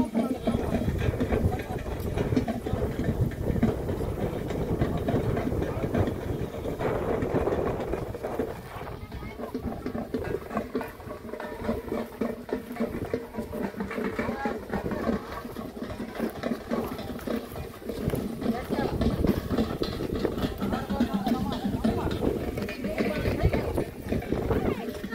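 Indistinct voices of several people talking as they walk, over a steady low rumble.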